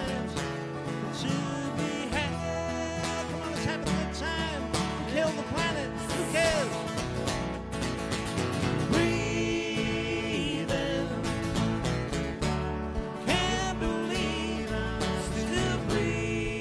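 Live acoustic band playing a country-style song: strummed acoustic guitars with a sung melody line over them, steady throughout.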